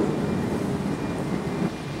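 Steady low rumble of outdoor street background noise picked up by a camcorder microphone, with no distinct event standing out.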